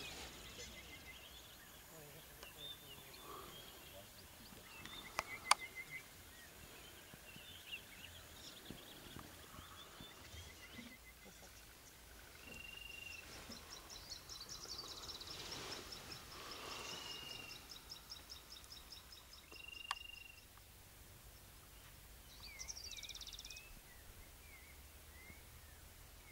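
Faint bush ambience with birds calling: a few short whistled notes, a rapid high trill through the middle and scattered chirps near the end. There are two sharp clicks, one about five seconds in and one about twenty seconds in.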